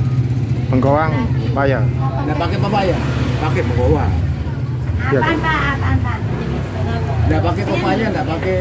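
Indistinct voices of people talking, over a steady low rumble of motor traffic.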